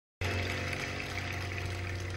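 Audience applauding, with a steady low hum underneath.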